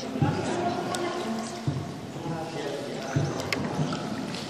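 Indistinct voices talking, with dull knocks about every second and a half.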